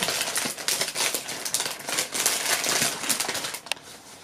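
Close-up crunching and crackling of a frozen watermelon ice bar being bitten at its green end and chewed, a dense run of fine crackles that thins out toward the end.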